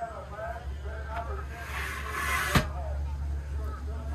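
A short hissing, sliding sweep followed by a sharp metal click about two and a half seconds in: a Moryde Safe-T-Rail entry safety rail on an RV door swinging out and latching into place. Faint voices underneath.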